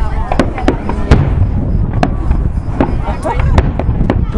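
Aerial fireworks going off in a string of sharp bangs and crackles, the loudest about a second in, over a low rumble.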